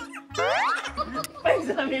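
Background music with a steady beat, cut across about a third of a second in by a rising cartoon 'boing' sound effect lasting about half a second, followed by laughter and voices.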